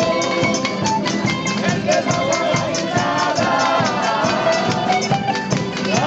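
Spanish folk string band playing in a steady rhythm: guitars strummed, a bandurria-type lute carrying the tune, and a large rope-tensioned bass drum keeping the beat.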